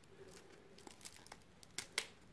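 Faint rustling and light clicks of a stack of trading cards being handled, with a sharper click near the end.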